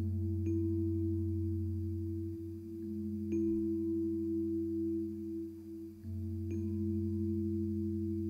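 Nord Stage 2 keyboard playing slow, sustained chords, a new chord struck about every three seconds over a held low bass note that changes twice.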